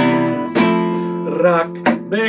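Nylon-string classical guitar strummed in a slow live accompaniment: sharp strokes at the start, about half a second in and near the end, with the chords ringing on between them.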